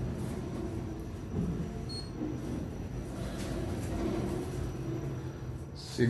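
Kone machine-room-less traction elevator car in motion: a steady low rumble and hum of the ride inside the car, with a short high beep about two seconds in.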